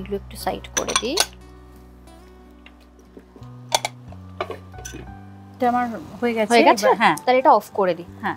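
A glass pot lid set onto a metal cooking pan, giving two sharp clinks about four seconds in.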